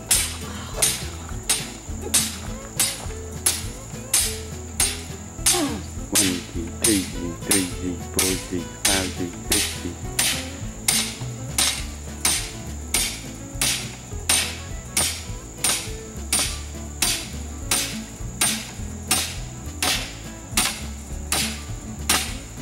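Hammer blows struck over and over at a steady pace, about two a second, each a sharp strike with a short ring.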